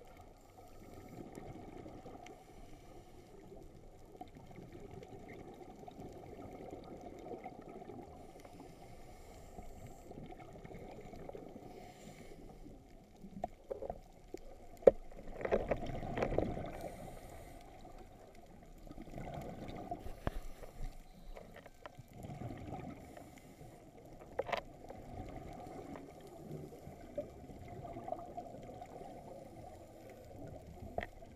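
Muffled underwater noise heard through a camera's waterproof housing while scuba diving, swelling in surges of a second or two that are the diver's exhaled regulator bubbles. A few sharp knocks stand out, the loudest about halfway through.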